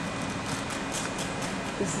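Steady background hum and hiss heard from inside a car, typical of an idling car's engine and air-conditioning fan. A woman's voice starts a word near the end.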